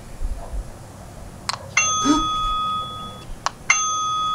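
Eufy video doorbell's built-in speaker sounding a bell-like chime twice, about two seconds apart, as its button is long-pressed to put it into pairing mode. A short click comes just before each chime.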